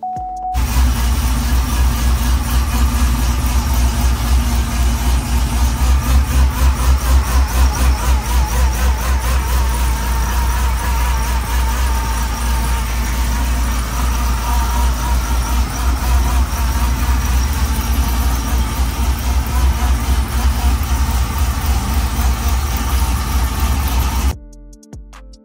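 The supercharged 6.2-litre V8 of a Cadillac CTS-V running steadily with an evenly pulsing low note. It comes in suddenly about half a second in, just after a short tone. The engine is running on a freshly fitted larger lower supercharger pulley and a new belt.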